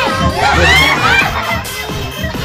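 Young children shouting and shrieking excitedly in a watching crowd, their high cries rising and falling about half a second in, over music with a steady beat.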